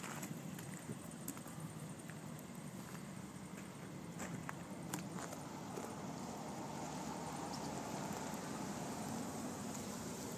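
Footsteps crunching on gravel, a few irregular steps, over a low steady rumble.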